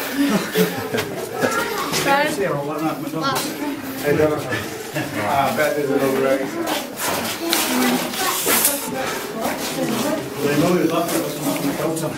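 Indistinct voices talking throughout, with scattered knocks and clicks.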